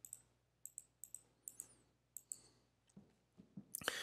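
Faint computer mouse clicks, a dozen or so short clicks mostly in quick pairs, over a near-silent room.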